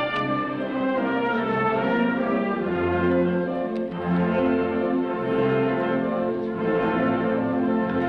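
Concert wind band (harmonie) playing, brass to the fore: full held chords over a sustained bass line, the harmony moving every second or so.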